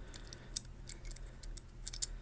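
Faint, scattered light clicks and ticks over a low steady hum, the clearest about half a second in and just before the end.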